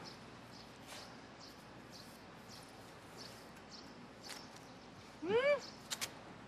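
Quiet background with a few faint, soft clicks, then about five seconds in a short wordless vocal sound from a person, its pitch rising and then falling.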